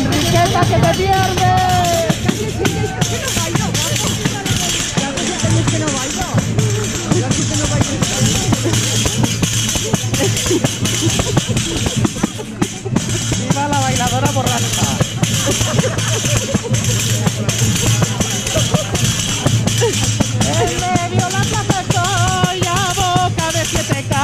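A pandereta, a Spanish frame drum with metal jingles, beaten by hand close by, its jingles ringing. It accompanies group singing of a traditional song, with sung phrases near the start, about halfway through and again near the end.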